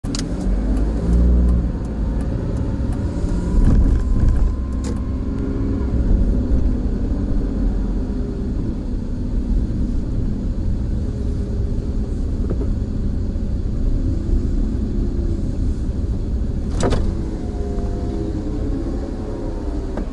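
Steady engine and road noise from inside a car driving at low speed, with a single sharp click about three seconds before the end.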